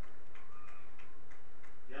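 Faint, regular ticking, about four ticks a second, over a steady background noise.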